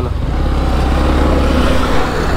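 Motorcycle engine running steadily as the bike rides along, under loud wind rush on the microphone.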